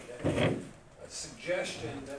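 A short, loud knock-and-scrape a quarter of a second in, lasting under half a second, with low murmured talk underneath.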